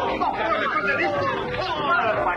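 Several voices talking and shouting over one another, a jumble of overlapping speech.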